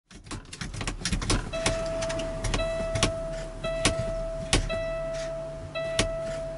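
A quick run of clicks, then a steady electronic warning tone from a truck's dashboard sounding five times, each about a second long, with a sharp click between each one.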